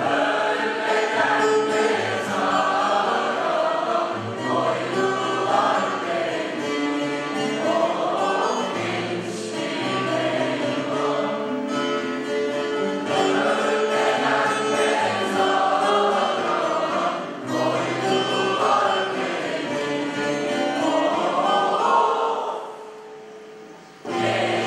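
Student choir singing a song with instrumental accompaniment; the music drops away shortly before the end.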